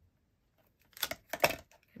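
A quick cluster of light clicks and taps from a clear acrylic stamp block handled on card against a tabletop as the stamp is pressed down and lifted off, starting about a second in.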